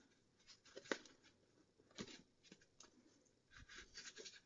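Near silence, with a few faint ticks and a soft rustle of cardstock being creased and refolded by hand along its score lines.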